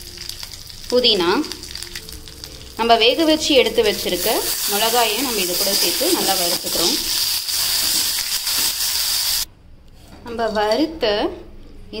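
Curry leaves and boiled red chillies sizzling in hot oil with whole spices in a kadai, stirred with a steel spoon. The sizzle grows stronger about four seconds in and cuts off suddenly about nine and a half seconds in.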